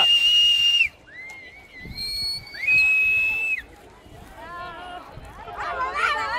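Three long, steady whistle blasts from cheering spectators. The first ends just under a second in, the others come at about 1 s and 3 s. Shouts of encouragement follow in the last couple of seconds.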